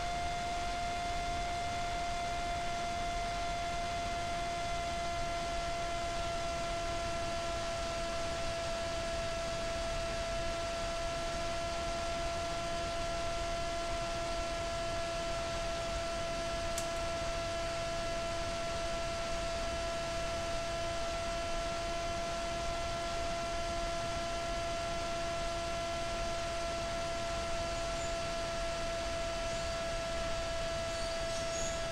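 Emax RS2205 brushless motor spinning the pusher propeller of a Z-84 flying wing at steady part throttle, about half, picked up by the onboard camera. It is a steady whine over rushing wind noise, and its pitch sags slightly in the first few seconds, then holds.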